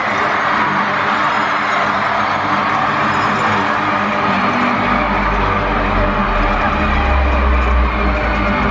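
Live concert music played loud through the PA, heard from within the crowd, with steady held low notes; a heavy deep bass comes in about five seconds in.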